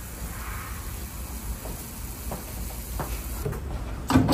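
Thin stream of tap water from a kitchen faucet running into a spray bottle, with a few faint clicks in the second half.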